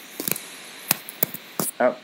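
A few sharp, separate clicks of a computer keyboard and mouse, about four spread across two seconds, with a short spoken "Oh" at the very end.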